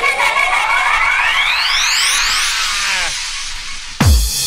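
Breakdown in a UK hardcore dance track: the kick drum drops out and a synth riser sweeps up in pitch for about two and a half seconds, then thins out. The beat comes back in at the very end.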